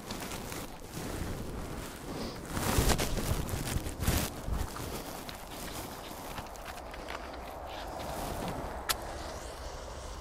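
Handling noises from a person kneeling in snow while priming a kerosene blowtorch with methylated spirits: rustling and crunching, loudest in two bursts about three and four seconds in, with one sharp click near the end.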